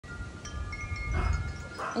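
Chimes ringing: several high, sustained tones that come in one after another and hang on, over a low rumble.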